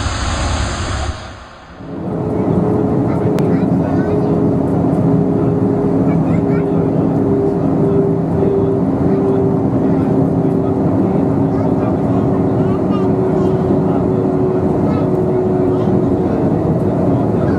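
Jet airliner cabin noise during descent: a steady rushing drone of engines and airflow with several steady hum tones on top, starting about two seconds in. Before it, a brief hissy noise fades out.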